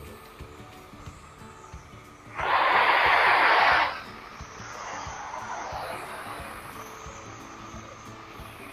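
Hiss of a high-pressure spray gun jet, loud for about a second and a half a couple of seconds in, then fainter, over faint background music.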